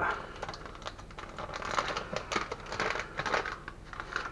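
Rustling and quick light clicks of kitchen items being handled while a seasoning is fetched, with no voice.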